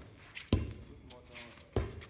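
Two sharp hits of hands on a light inflatable volleyball during a rally, a little over a second apart.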